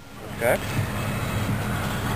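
Steady rushing noise of a motor vehicle running nearby, after a single spoken "okay".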